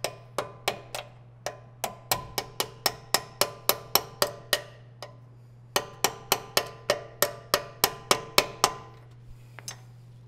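Hammer blows on a brass drift, driving a radius arm bolt out of its lower bracket on an 80 Series Land Cruiser. The strikes are sharp and ringing, about three to four a second. They stop briefly around the five-second mark, then come in a second run that ends near the nine-second mark.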